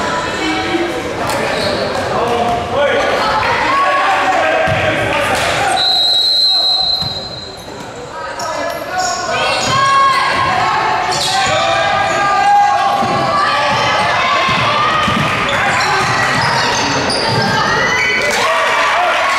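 A basketball bouncing on a hardwood gym floor during play, under players' and spectators' voices echoing in a large gym. A steady, high, whistle-like tone of about a second about six seconds in: a referee's whistle.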